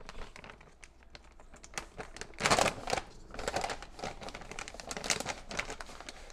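Plastic almond-flour bag crinkling and rustling as it is opened and a measuring cup is worked into it, in irregular bursts, loudest about two and a half seconds in.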